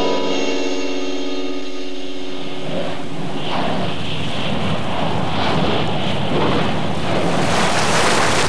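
A sustained music chord that ends about three seconds in, giving way to the steady rushing noise of an erupting lava fountain.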